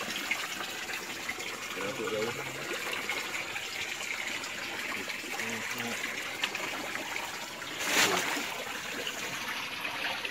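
Small creek's water trickling and running steadily, with a brief louder rush of noise about eight seconds in.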